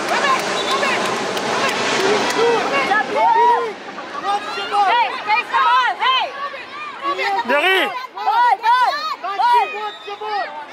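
Spectator chatter at first, then from about three seconds in, many short, high-pitched calls and shouts from young children's voices, with no clear words.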